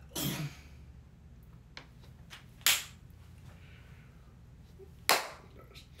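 Quiet room tone with a short breath at the start, then two sharp smacks about two and a half seconds apart.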